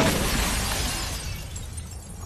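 Title-sequence sound effect: a sudden burst of noise that fades away over about two seconds as the flaming title breaks into embers.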